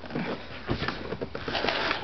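A man breathing with effort and moving about, with rustling handling noise, as he tries to lift an object that is too heavy for him; a broad hiss near the end.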